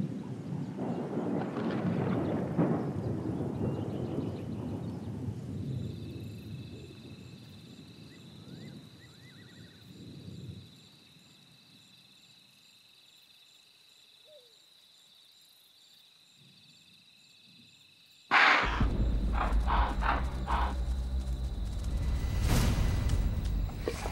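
Rolling thunder that fades away over the first ten seconds, followed by a quiet stretch with a steady high chirring of night insects. About 18 seconds in, a leopard attacks an impala: a sudden loud burst of deep growling and struggling.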